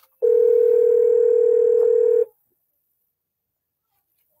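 A phone's outgoing-call ringing tone: one loud, steady beep of about two seconds that cuts off sharply, the sign that the call is ringing through and has not yet been answered.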